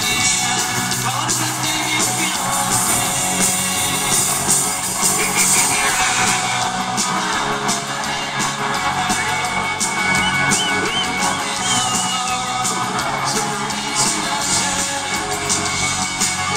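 Live rock band playing in an arena, recorded from within the crowd: electric guitars, drums and a lead singer, with the audience's noise mixed in.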